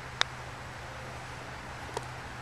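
A single sharp click as a face-on GP putter strikes a golf ball, followed near the end by a fainter, duller knock. Under both runs a steady outdoor hiss with a low hum.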